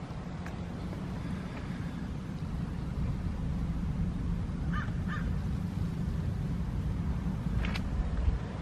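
Outdoor ambience: a steady low rumble, with a bird calling twice in quick succession about five seconds in and a brief click near the end.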